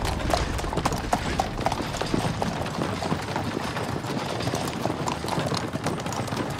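Hooves of several horses beating quickly and unevenly on a dirt road, a rapid run of overlapping clip-clops.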